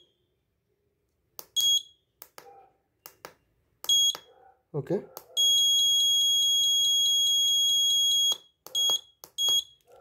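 Electronic buzzer of an Arduino bell timer beeping with a single high, steady tone as its setting buttons are pressed. There are short beeps about one and a half seconds in and at four seconds, a long beep of about three seconds from five and a half seconds, and two short beeps near the end, with small push-button clicks between them.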